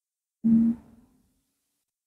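A person's voice making one brief hummed note, a short 'mm' held for about half a second and then fading.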